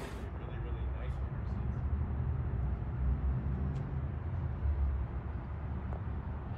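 Low, muffled background rumble with indistinct voices and a few faint clicks, after a louder sound cuts off abruptly at the start.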